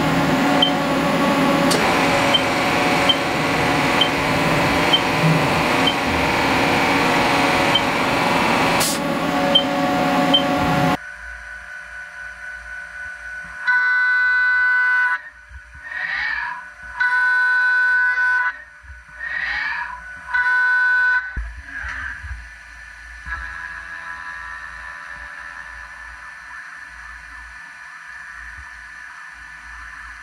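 Haas CNC mill machining an aluminium part with flood coolant. For the first ten seconds there is a loud steady noise with a faint tick about once a second. It stops suddenly, and a quieter high-pitched cutting tone with overtones starts and stops three times, with pitch glides between, then settles to a faint steady whine.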